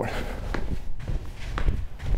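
Sneakered feet landing and pushing off on artificial turf during lateral skips: several soft, irregular footfalls.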